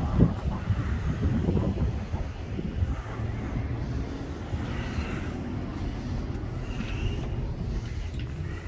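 Wind buffeting the microphone: a steady, rough low rumble.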